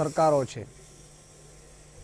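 A man speaking Gujarati for about half a second, then a pause holding only a faint steady hiss and low hum.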